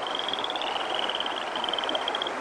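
A stream flowing, with a high-pitched, rapid trill running over it, stepping slightly in pitch a couple of times.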